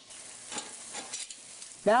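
Steaks and hamburgers sizzling on the stainless grates of a Fire Magic Echelon gas grill, a low, even sizzle with a few short crackles.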